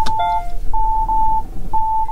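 2020 Hyundai Santa Fe's rear cross-traffic warning sounding in reverse: three long beeps of one steady pitch, about one a second, alerting that a car is coming by behind. A sharp click comes right at the start, and a shorter, lower chime overlaps the first beep.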